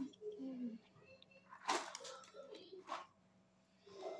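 Faint voice sounds without clear words in the first second, then two short sharp noises, about two and three seconds in.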